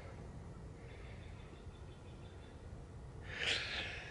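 Quiet background noise, then a short breathy exhale close to the microphone a little over three seconds in.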